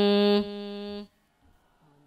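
The end of one long, steady chanted note in a single voice during a Buddhist Bodhi puja chant: it drops away about half a second in, fades out about a second in, and leaves near silence.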